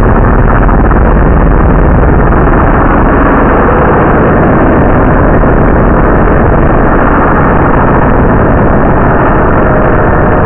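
Loud, heavily distorted, steady rumbling noise with no clear pitch and a dull, muffled top. A faint steady tone joins near the end.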